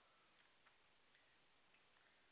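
Near silence: room tone with a few very faint, irregular ticks.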